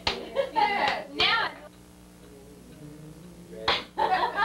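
Men's voices talking briefly in a small room, then a sharp smack about three and a half seconds in, followed by more voices.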